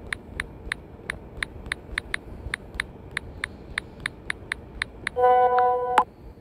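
Key-press clicks from a phone's on-screen keyboard, about three a second, as a text message is typed. Near the end a loud, horn-like honk with a steady pitch cuts in and lasts under a second.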